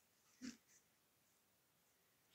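Near silence: room tone, broken about half a second in by one brief faint breathy snort of stifled laughter.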